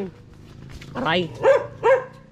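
Small dog barking, three short barks in quick succession starting about a second in.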